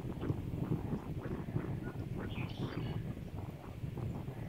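Distant rumble of a Falcon 9 rocket's nine Merlin engines climbing away: a steady low rumble shot through with irregular crackling. A brief higher sound comes just past halfway.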